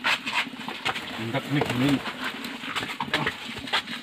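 A person's short, wordless vocal sounds about one to two seconds in, among scattered knocks and shuffling footsteps as several people move through a doorway together.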